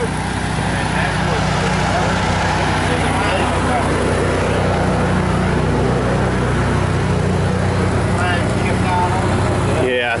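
A heavy machine's engine idling steadily.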